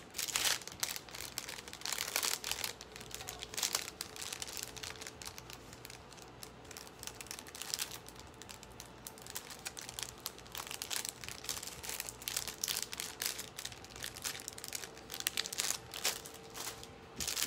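Packaging crinkling and rustling in irregular bursts of small clicks as the next bracelet is handled and unwrapped.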